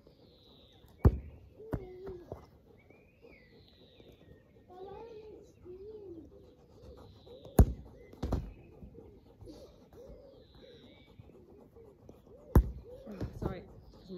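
A football kicked three times, each sharp kick followed well under a second later by a second thump as the ball is met or lands. Birds chirp in the background.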